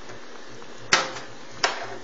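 Metal kitchen tongs clacking twice against a frying pan of sauce: one sharp click about a second in, a lighter one just after, over a steady low hiss.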